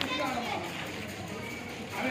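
Faint background voices of children talking.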